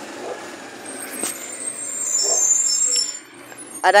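Garbage truck moving along the street, its running and rolling noise building from about a second in, with a high-pitched squeal of the brakes over it, then dropping off suddenly just after three seconds.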